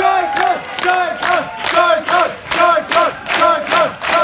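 Concert crowd chanting in rhythm: a quick run of short shouted syllables, about two to three a second.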